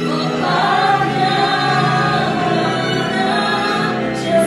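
Christian worship music with many voices singing together in sustained, flowing lines.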